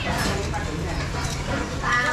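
Indistinct voices over a steady low background hum, with a short pitched call near the end.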